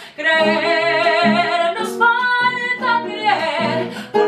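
A woman singing a Colombian bambuco with classical guitar accompaniment, holding long notes with vibrato over the plucked guitar.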